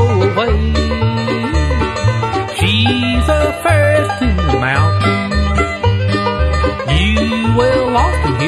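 Bluegrass band playing an instrumental break with no singing: banjo and guitar over a bass keeping a steady beat, with a lead melody that slides up and down in pitch on top.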